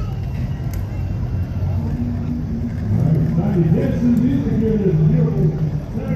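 Indistinct voices talking nearby over a steady low rumble, likely the open-air din of a busy street.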